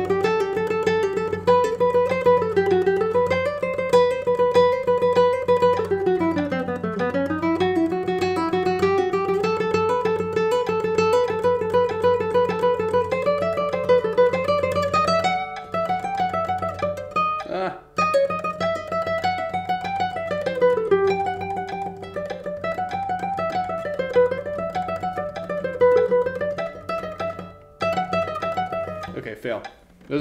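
Nylon-string classical guitar playing fast, continuous sixteenth-note scale runs that climb and fall, practised with a metronome at 98. The run breaks off briefly about halfway through and again near the end, where the right-hand i–m finger alternation gets off and is hard to recover.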